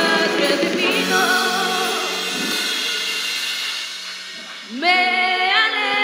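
Gospel song with voices singing over a steady low accompaniment. The singing dips about four seconds in, and a new phrase starts with a rising swoop just before five seconds.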